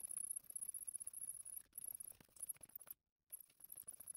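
Small wire-framed ink roller rolled quickly back and forth through tacky relief ink on an inking plate, blending blue and yellow into a rainbow roll: faint, rapid, irregular ticking and crackle, with a short break about three seconds in.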